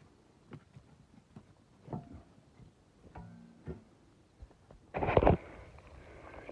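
Scattered faint snaps and rustles of footsteps and movement in dry sticks and leaf litter, with a louder rustling burst about five seconds in and two brief faint pitched sounds between.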